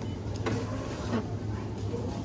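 Supermarket self-service weighing scale printing a price label from its built-in label printer, over a steady low hum.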